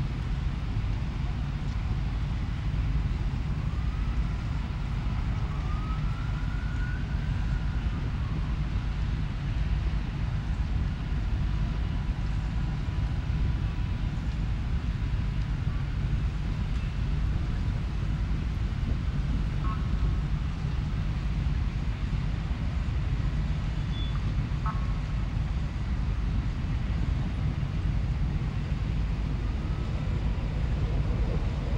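Steady low outdoor rumble, with a distant siren faintly wailing up and down a few seconds in.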